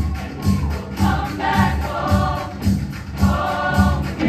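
A large mixed choir singing in harmony over a band accompaniment with a steady, heavy bass beat about twice a second.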